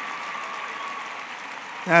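A crowd applauding: a steady wash of clapping.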